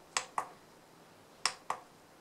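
Keypad buttons on a handheld oscilloscope pressed twice, each press giving a pair of quick sharp clicks about a quarter second apart.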